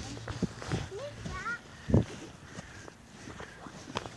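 Footsteps on wet, muddy grass, with a few short high-pitched voice sounds about a second in and one louder thump about two seconds in.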